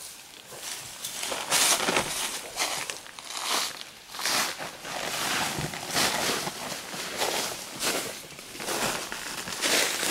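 Irregular rustling and crunching in dry leaf litter, coming in uneven bursts about once or twice a second.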